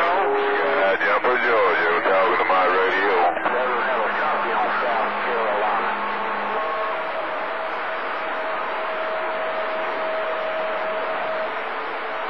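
CB radio receiving skip on channel 28: a steady hiss of static with broken, distant voices for the first few seconds, then steady carrier whistles held over the static for most of the rest.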